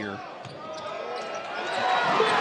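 Live court sound of a basketball game in play: a ball being dribbled and shoes squeaking on the hardwood floor, over arena crowd noise that swells toward the end.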